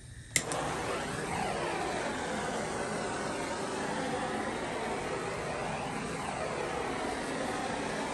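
Bernzomatic handheld propane torch lit with a single sharp click of its igniter about half a second in, then its flame hissing steadily.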